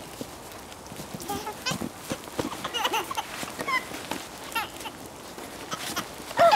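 Baby laughing in repeated short, high-pitched bursts, starting about a second in.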